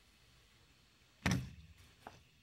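A single sharp thump about a second in, dying away quickly, like something knocked or set down on a desk.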